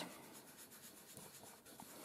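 Faint rubbing of fingertips on pastel-covered paper, blending soft pastel, barely above near silence.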